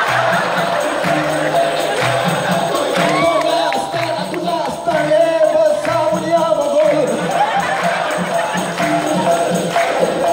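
Live dikir barat music: a seated chorus clapping in rhythm and singing with a lead singer on microphone, over jingling percussion and steady low drum and gong notes.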